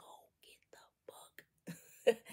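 Near silence with faint whispered speech and breaths from a woman.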